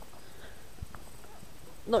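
Faint footsteps of a person walking on a stony dirt track, a few soft thumps over a quiet background; a man's voice starts at the very end.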